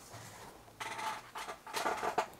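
Faint scratchy rustling over quiet room tone, starting nearly a second in, followed by a few lighter scrapes near the end.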